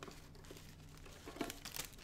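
Crinkling of a protective packing sheet as it is handled and pulled out from between a waffle maker's cooking plates, with a louder flurry of crackles about one and a half seconds in.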